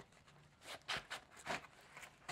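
Faint rustling and scraping as a stiff insert plate is slid into a fabric sleeve of a placard pouch: a handful of short, soft strokes in the second half.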